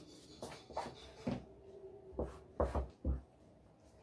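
Faint handling sounds of cloth being marked with tailor's chalk on a wooden cutting table: a few soft knocks and rustles, the heaviest three between about two and three seconds in.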